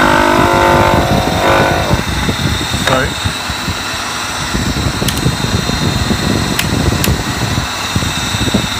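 A 3 hp (2.2 kW) modified electric motor running steadily at about 2,800 rpm, with a block of wood pressed against its spinning shaft to load it. A held, pitched tone sits over the running for the first second and a half, and a few sharp clicks come later.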